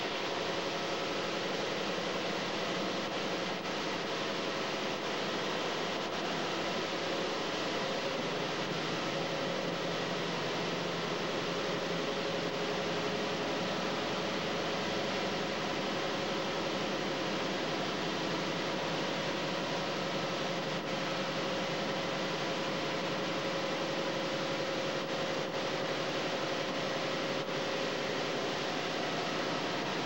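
Mark VII Aquajet GT-98 touchless car wash spraying high-pressure water over a pickup: a steady hiss of spray with a faint steady hum underneath.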